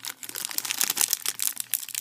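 Foil-lined plastic gummy candy packet crinkling in a quick run of sharp crackles as hands work it open.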